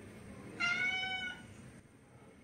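A domestic cat giving one short, high meow a little over half a second in.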